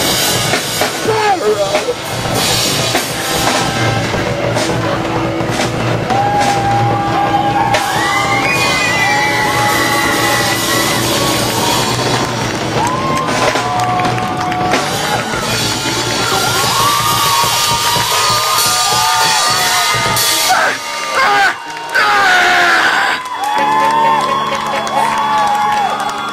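Live rock band playing loud: drums and electric guitar under yelled vocals. Near the end the low end of the band thins out, leaving shouting and whoops.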